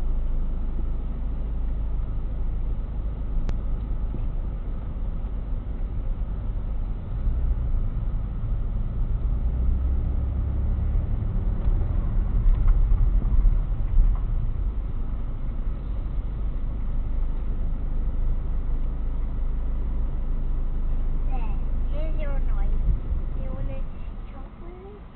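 Low, steady rumble of a car's engine and tyres heard from inside the cabin in slow, stop-start traffic, louder for several seconds around the middle.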